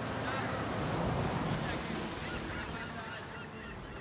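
Outdoor ambience at sea: wind and water noise with a low steady hum and a scatter of short, high calls over it, getting gradually quieter toward the end.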